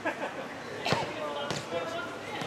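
A futsal ball kicked on an artificial-turf court: two sharp hits, about a second in and again half a second later.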